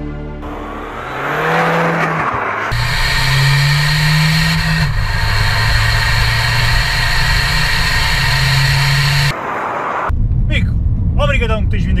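Seat Ibiza 6J's remapped 1.6 TDI four-cylinder diesel engine pulling away with rising revs, then running steadily at speed with road noise. The sound cuts off suddenly after about nine seconds, giving way to cabin noise.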